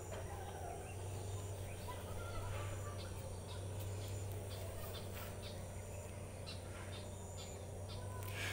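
Faint background: a steady low hum with scattered distant bird calls.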